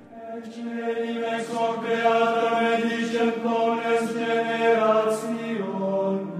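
Sacred chant sung by voices in slow, long held notes, with words audible only as occasional soft consonants.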